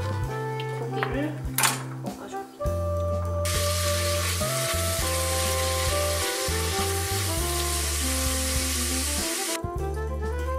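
Beef cubes sizzling as they sear in hot oil in a pot while being stirred with a spatula. The sizzle starts abruptly about three and a half seconds in and cuts off just before the end. There is a single sharp clack about a second and a half in.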